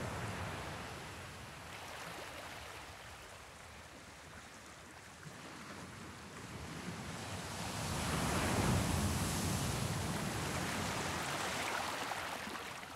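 Wind rushing over the camera's microphone while riding, an even noise that dips and then swells louder over the last third.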